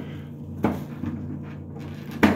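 Toilet paper being pulled from a black plastic wall dispenser, its cover giving a sharp clack about two-thirds of a second in and a softer one shortly after. A steady low hum sits underneath.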